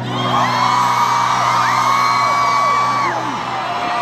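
Arena crowd screaming and whooping, many high voices overlapping, over a low note held by the band.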